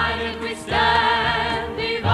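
A mixed youth choir singing held chords with band accompaniment and a steady low bass note; a new sustained chord swells in a little under a second in.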